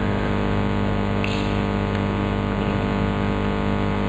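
A steady, even hum made up of several fixed pitches, with no rise or fall.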